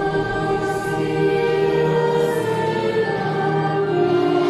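A children's choir singing in long held notes, the pitch moving from one sustained note to the next about every second.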